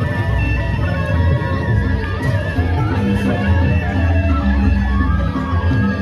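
Sasak gendang beleq ensemble playing: large barrel drums beating a dense, steady rhythm, with the gongs and cymbals of the ensemble over it.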